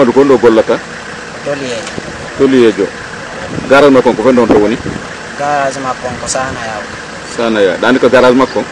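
A man's voice speaking in short phrases with brief pauses, in a language the recogniser did not catch, over a steady background hum.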